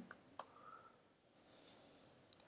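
Near silence, with a single faint computer keyboard keystroke click about half a second in.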